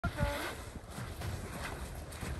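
Low wind rumble on the microphone with scattered small knocks and clinks of broken ice floes shifting in the water, and a short high call right at the start.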